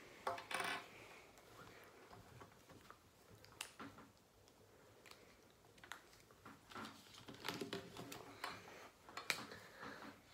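Whiteboard markers being drawn across a whiteboard: faint, irregular scratchy strokes and small clicks, with one louder squeaky stroke about half a second in.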